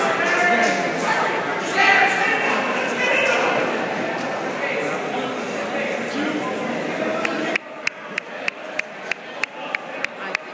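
Spectators' voices and chatter echoing in a school gymnasium. About three-quarters of the way through, the chatter drops away suddenly and a steady run of sharp taps follows, about three a second.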